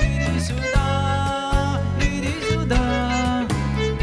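Live rock band playing an instrumental passage: drums, bass guitar, acoustic guitar and electric guitar, with a lead melody of held notes that bend in pitch.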